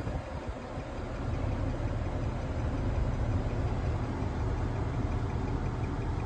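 Car engine idling, heard from inside the cabin as a steady low rumble that rises slightly about a second in and then holds.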